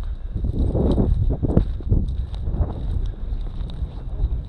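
Wind buffeting the microphone with a steady low rumble, over irregular footsteps and dry prairie grass swishing as people walk through it.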